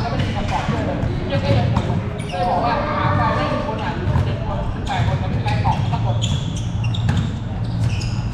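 A basketball bouncing on a hard court during a pickup game, with players' voices calling out over it and a steady low hum underneath.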